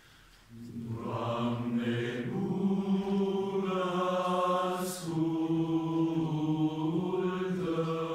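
Mixed choir of women's and men's voices singing in slow, long-held chords, beginning about half a second in, with a brief break near five seconds.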